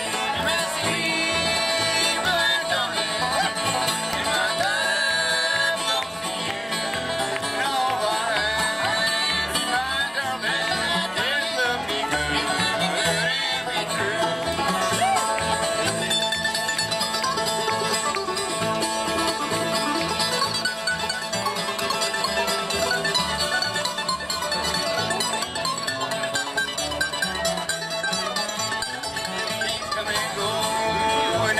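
Bluegrass band playing live without singing: fiddle, banjo, mandolin, acoustic guitar and upright bass together, with a steady bass pulse under the melody.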